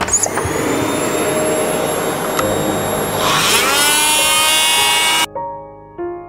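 Oscillating multi-tool running as it cuts through the wooden supports of a wall opening, a loud steady whine whose pitch rises and settles higher about three seconds in. The sound cuts off suddenly shortly before the end.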